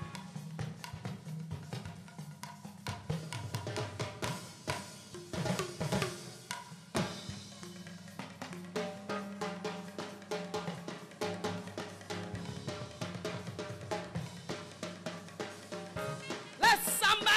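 Church band's drum kit playing between songs: snare and bass drum hits with cymbal strokes over a held low note, no singing.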